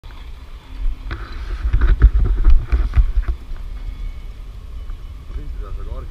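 Knocks and rubbing rumble close to the microphone, loudest between about one and three seconds in, then a quieter steady rumble.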